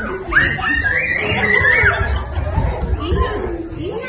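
Small children shrieking and shouting while they play, with a long high-pitched squeal in the first half. Adults chatter and laugh underneath.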